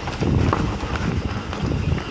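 Mountain bike riding over a dirt and leaf-covered forest trail: tyres rolling on the ground with irregular knocks and rattles from the bike over bumps, under a low rumble of wind on the microphone.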